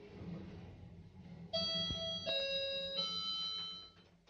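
Passenger lift's electronic arrival chime: three sustained notes in a row, starting about a second and a half in, signalling that the car has reached its floor. Under it runs a low steady hum in the car.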